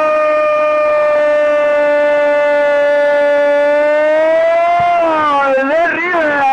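A football radio commentator's long, sustained goal cry: one shouted note held at a steady pitch for several seconds, wavering and breaking up near the end.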